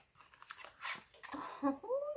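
Scissors cutting through sealed product packaging, two short crisp snips in the first second, followed by a brief wordless voice sound near the end.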